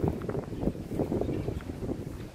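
Wind rumbling on a handheld camera's microphone, with scattered soft thumps as the camera is carried along.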